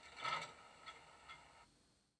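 ESU LokSound 5 sound decoder in a model Ventus electric multiple unit, playing through an ESU passive radiator speaker: a short hiss about a quarter of a second in, then a few faint clicks, before the sound cuts off suddenly.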